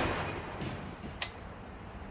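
The echo of a heavy rifle shot dying away over the first half second, followed about a second and a quarter in by one short, sharp crack.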